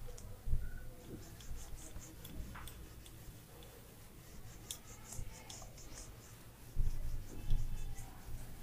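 A whiteboard eraser rubbing across the board in repeated short wiping strokes. There are dull low thumps about half a second in and again near the end.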